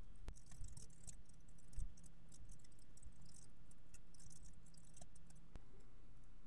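Faint computer keyboard typing: scattered light key clicks over a low steady hum.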